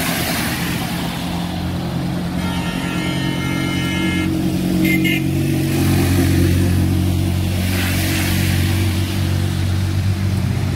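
Street traffic on a wet, slushy road: a motor vehicle engine running close by, with a steady low hum, while passing cars send up tyre hiss off the wet pavement at the start and again around eight seconds in. A brief higher tone sounds a few seconds in, and there is a short sharp click about five seconds in.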